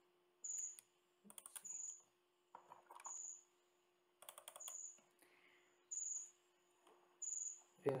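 Quiet, short bursts of sharp clicks from a computer keyboard and mouse, with a short high-pitched chirp repeating about every second and a quarter.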